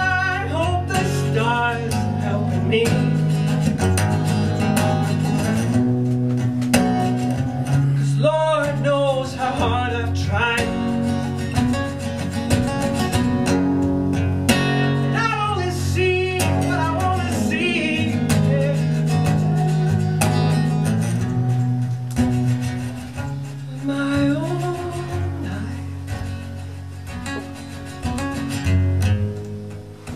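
Acoustic guitar played and strummed live, with a sung vocal line rising and falling over it at a few points. The playing grows quieter over the last several seconds.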